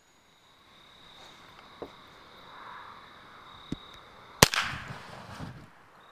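A single sharp crack from a .22 LR rifle shot about four and a half seconds in, followed by about a second of fading rushing noise as the hit paint can flares into fire. Two faint clicks come earlier.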